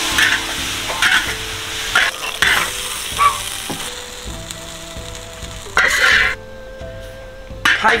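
Tomatoes and quail eggs sizzling in a large wok, with a metal spatula scraping and clattering against the pan as the dish is stirred and scooped out. The sizzling and scraping are strongest in the first half and die down after about four seconds, with one more short scrape near six seconds.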